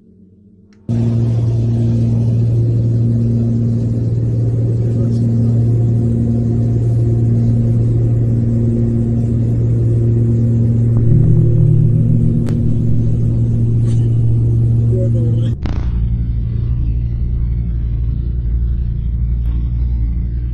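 Steady drone of a light propeller aircraft's engine and propeller heard from inside the cabin, starting suddenly about a second in, with a pulsing beat over a low hum and a brief rise in pitch midway. Near the end the sound switches abruptly to a duller, lower rumble.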